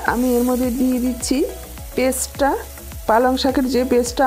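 Spinach paste sizzling in hot oil in a non-stick frying pan as it is stirred with a silicone spatula, under loud background music with a sung melody.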